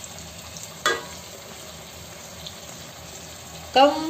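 Chicken and tomato pieces frying gently in an uncovered karahi on a low flame: a steady, soft sizzle, with one brief louder sound about a second in.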